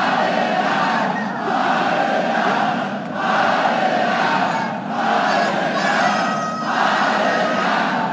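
Large concert-hall audience chanting in unison, one chant about every two seconds, heard from backstage.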